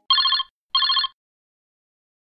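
Telephone-ring sound effect: two short trilling rings, each under half a second, a quarter second apart.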